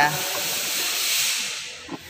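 A steady hiss that dies away near the end.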